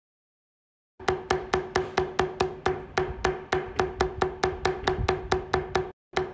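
A metal leather beveling tool struck rapidly with a mallet, driving the cut outlines down into vegetable-tanned leather on a granite slab. Sharp, even knocks about five a second, starting about a second in.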